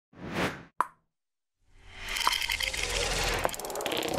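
Sound effects of an animated logo intro: a short swell of noise and a sharp pop within the first second, a moment of silence, then from about two seconds in a dense shimmering swell dotted with clicks.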